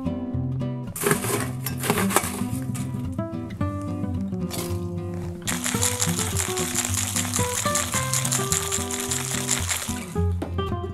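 Ice clinking into a stainless steel cocktail shaker about a second in, then, from about halfway through, ice shaken hard in the closed shaker: a fast, steady rattle. Acoustic guitar background music plays throughout.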